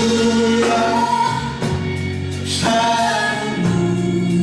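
Live orchestra accompanying singers, the voices holding long notes that move to new pitches a couple of times.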